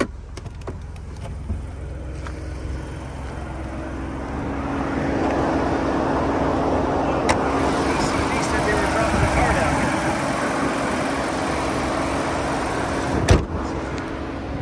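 Ford Bronco's engine idling with the hood open: a steady hum with a rush of fan and engine noise, which grows louder about four seconds in. Near the end the hood is shut with a single loud bang.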